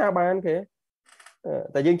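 Speech only: a lecturer talking, with a short pause just under a second in before he carries on.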